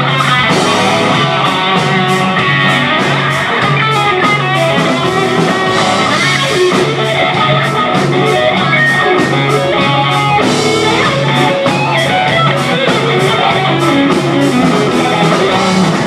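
Live rock band playing an instrumental passage: electric guitar over a drum kit keeping a steady cymbal beat, with bass and keyboard.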